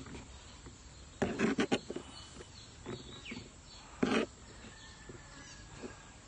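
A few brief knocks and clatters of a bowl and utensils being handled on a table, two small clusters about four seconds apart. Behind them is a faint outdoor background with a short bird chirp.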